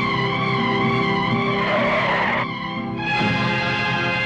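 Film background music with sustained, wavering held notes. About a second and a half in, a short rushing noise lasting under a second cuts across it, then the music dips briefly before carrying on.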